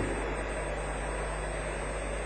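Steady low hum and hiss of a hall's amplified sound system in a pause between spoken phrases, with the echo of a man's voice dying away at the start.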